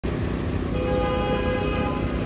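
Fountain jets splashing over a steady city traffic rumble. About three-quarters of a second in, a horn from the street starts and holds as one long, steady blast.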